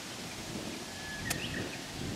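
A golf utility club striking the ball about a second in: one short, sharp click.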